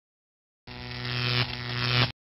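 A steady low buzzing hum that starts under a second in and grows louder, dips briefly halfway, swells again and cuts off suddenly at the end.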